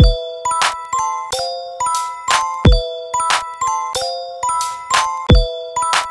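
Instrumental electronic dance beat: short ringing pitched notes over sharp, evenly spaced percussion hits. A deep bass hit that falls in pitch lands three times, about every two and a half seconds.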